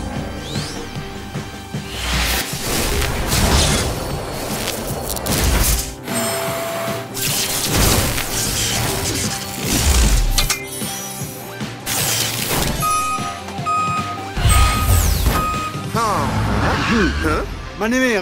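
Cartoon soundtrack music mixed with dense sound effects: whooshes, crashes and mechanical clanks for a superhero-truck transformation. A run of four short beeps comes near the end.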